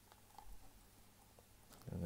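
Near silence with a few faint taps and a soft knock from feeding tongs moving inside a plastic tarantula enclosure. A man's voice starts just before the end.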